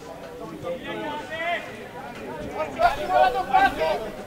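Voices calling out on and around an outdoor football pitch, loudest in a string of calls near the end.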